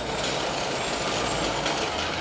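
Street noise dominated by a motor vehicle's low engine rumble, which drops away near the end, under a steady wash of traffic and crowd noise.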